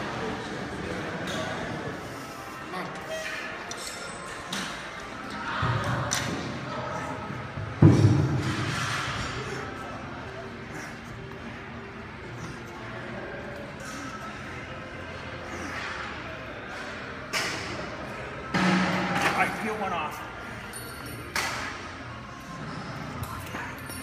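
Gym room sound with background music and voices, broken by metal clanks of weight plates and machine parts. The loudest is a heavy thud about eight seconds in.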